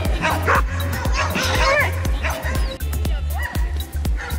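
Several dogs barking and yipping in play, with some high whimpering calls, over background music with a steady bass line.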